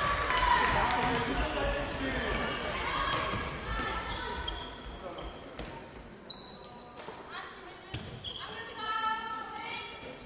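Handball game in a sports hall: players and spectators calling and shouting, echoing in the hall, with a handball bouncing on the court floor. The voices are loudest at the start and die down after about five seconds.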